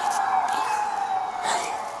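Emergency vehicle siren sounding one long wail, its pitch slowly falling.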